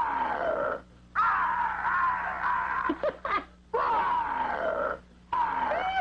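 A person giving about four drawn-out playful roars in a row, each sliding down in pitch.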